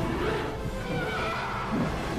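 A cartoon Tyrannosaurus roaring: a high cry that wavers in pitch about halfway through, over a dramatic orchestral film score.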